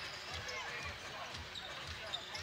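Basketball being dribbled on a hardwood court, a steady bounce about two to three times a second.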